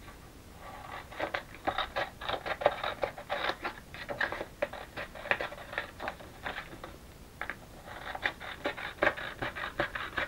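Paper being handled and sorted through by hand, rustling and crinkling in irregular crackles, with a short lull about seven seconds in.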